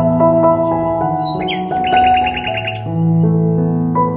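Calm ambient background music of slow, sustained chords, with a quick high trill of bird chirps about two seconds in.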